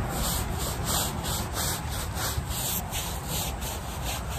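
Stiff-bristled hand brush scrubbing mold off a wet trampoline mat in quick, even back-and-forth strokes, about three to four a second.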